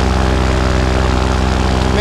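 Vittorazi Moster 185 two-stroke paramotor engine and propeller running at a steady, unchanging pitch in cruise flight.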